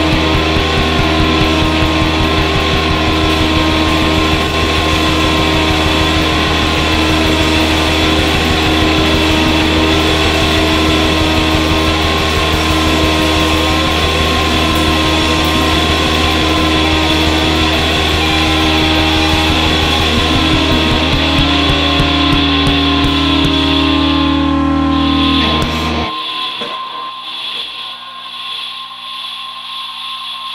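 Live band playing loud, dense rock with electric guitar over a deep, steady bass drone. The music stops sharply about 26 seconds in, leaving a held high tone over quieter sound.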